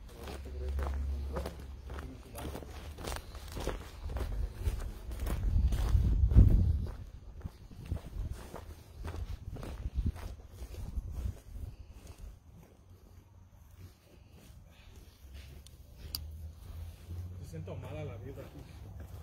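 Footsteps through grass and dirt, a quick run of crunching steps that thins out after about twelve seconds. Low rumbling on the microphone rises to its loudest about six seconds in.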